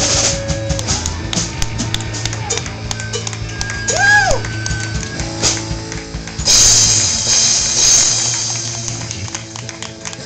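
Live rock band with electric guitar, bass, drums and keyboard playing the close of a song: a held low bass note under drum and cymbal hits, with a note that bends up and back down about four seconds in. A loud cymbal crash comes at about six and a half seconds, then the band dies away toward the end.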